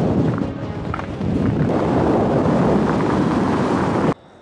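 Wind blowing hard across the microphone, a dense steady rush with a brief dip about a second in.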